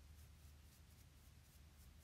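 Faint, rhythmic scratching of toothbrush bristles scrubbed over dried liquid latex on the skin, about four strokes a second, over a low steady hum. The scrubbing lifts the latex into flakes.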